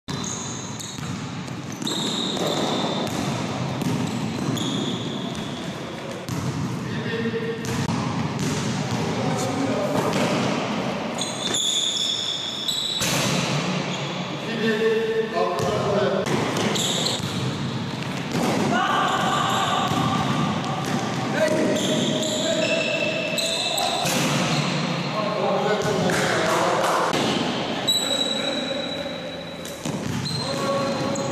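Basketballs being dribbled on an indoor gym floor, a steady run of bounces echoing in a large hall, with short high sneaker squeaks and players' voices.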